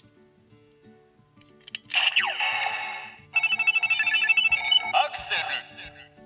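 Bandai Kamen Rider Ride Watch toy playing its electronic sound effects through its small speaker after a button click: a falling swoosh, then a fast ringing run of high beeps, then another short burst near the end. Quiet background music runs underneath.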